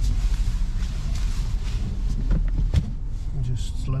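Low, steady rumble of a car moving slowly, heard inside the cabin, with a sharp knock nearly three seconds in.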